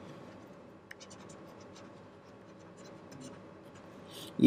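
Faint scratching and light tapping of a stylus writing on a tablet screen, with one sharper tick about a second in.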